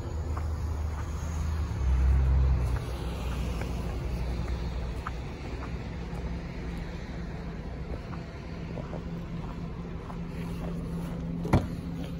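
Steady low rumble and hum with faint scattered ticks of footsteps on packed snow, then a single sharp click near the end as the car's rear door is unlatched and opened.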